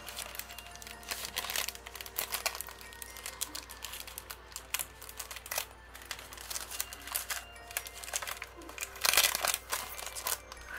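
Clear plastic wrapping on a small cardboard product box crinkling and crackling as it is handled and unwrapped, with light clicks. The crinkling comes in irregular bursts and is loudest near the end.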